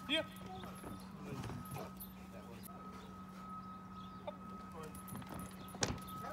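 A single sharp knock near the end as a Rottweiler's paws strike the wooden A-frame, over a faint steady hum.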